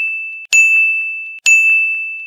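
Bright bell-like ding sound effect, struck about once a second, each one ringing and fading before the next: the tail of one and two fresh dings.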